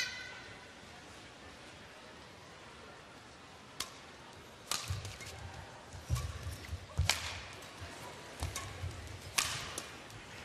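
A badminton rally: sharp cracks of rackets striking the shuttlecock, a single one near four seconds in and then a quick string of them from about five seconds in, with dull thuds of the players' feet on the court underneath. A short squeak at the very start.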